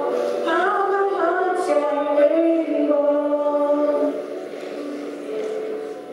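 A girl and a boy singing together into microphones over a hall PA, with no accompaniment; the singing is fuller for the first four seconds, then softer toward the end.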